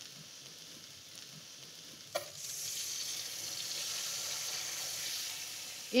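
A knock about two seconds in, then tap water running steadily into an enamelled cast-iron pot of vegetables in the sink.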